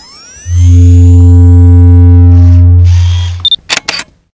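Synthesized title-sequence music: rising sweeps lead into a loud, steady low synth note held for about three seconds, then a few sharp clicks near the end.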